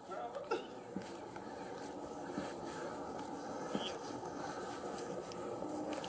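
Faint outdoor background picked up by a police body-worn camera: a steady hiss with a few soft knocks and faint, distant voices.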